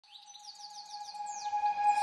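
A quick run of falling bird chirps over a held steady tone, fading in as the opening of an intro music jingle.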